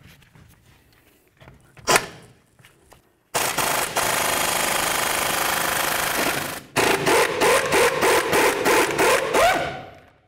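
Pneumatic impact wrench hammering out a wheel-bearing mounting bolt: a short knock about two seconds in, then one steady run of about three seconds, then a string of short trigger bursts, about four a second, until the bolt comes free.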